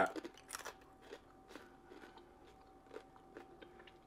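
A person quietly chewing a mouthful of food, with a few faint, short mouth clicks spread across the seconds. A faint steady tone runs underneath.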